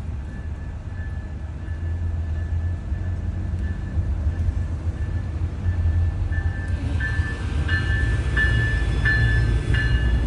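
Amtrak passenger train passing, heard from inside a car as a steady low rumble. Over it a level-crossing bell rings in a high repeating tone that grows louder in the second half.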